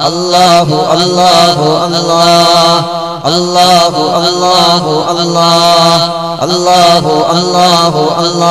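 Two men chanting Islamic dhikr in unison into microphones, singing long, wavering held notes in a devotional melody with brief breaths between phrases.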